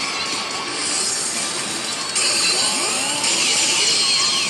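Loud pachislot parlour din: a dense wash of clattering machine noise and electronic slot-machine effects, getting louder about two seconds in.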